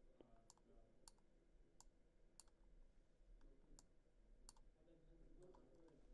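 Near silence with faint computer mouse clicks, irregular, about one every half second to a second.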